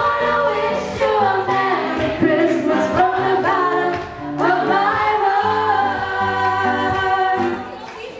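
A small live vocal group singing held notes in harmony through handheld microphones, accompanied by a strummed acoustic guitar.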